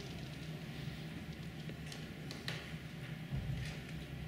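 Quiet room tone with a steady low hum and a few faint short ticks and scratches of pens writing on paper.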